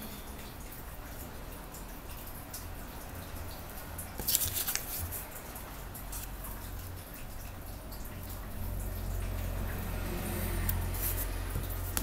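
Small sticky clicks and rustles of a glue brush working Mod Podge and torn paper being pressed onto particle board, busiest about four seconds in, over a steady low hum.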